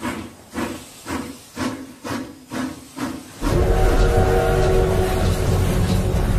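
Steam locomotive chuffing, about two exhaust beats a second. About three and a half seconds in, a loud steady steam whistle comes in over a deep rumble and is held.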